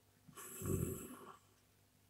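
A man's low, rough grunt through the nose with lips closed, lasting about a second.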